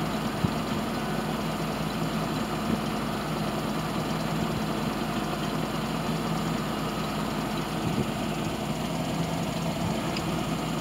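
Tandem-axle grain dump truck's engine idling steadily, with a few light clicks over the hum.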